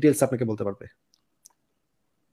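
A man's voice speaking for under a second, then stopping into near silence with one faint click about a second and a half in.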